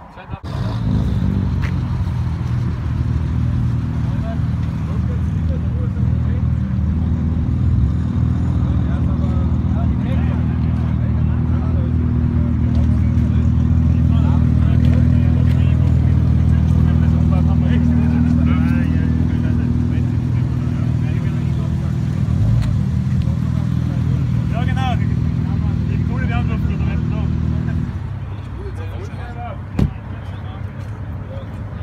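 Car engine idling loudly with a deep, steady note, coming in suddenly about half a second in and swelling slightly midway. The engine note drops away near the end, and a sharp bang follows just before the end.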